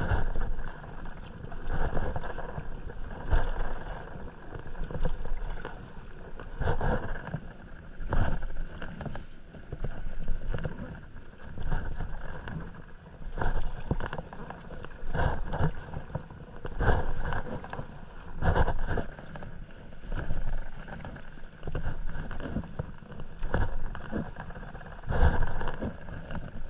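Stand-up paddle strokes: the paddle blade splashing and swishing through calm sea water in a regular rhythm, roughly once every second and a half.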